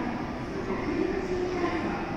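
Station platform sound beside a stopped 683-series limited express electric train with its doors open: a steady hum and rumble, with faint voices in the background.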